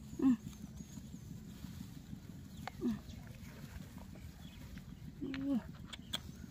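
Faint rustling of dry grass and light ticks as gloved hands pick large land snails off the ground, with three short voice-like sounds.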